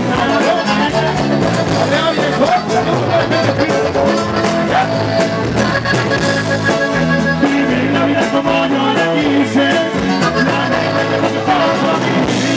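Live Mexican regional band music played loud through a stage sound system, with a singer's voice over electric bass and the band.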